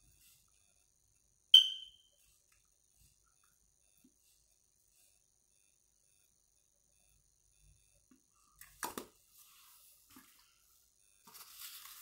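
A single sharp plastic click with a brief high ring about a second and a half in, from handling the lip-gloss container. Then near silence, with a few soft handling clicks and rustles near the end.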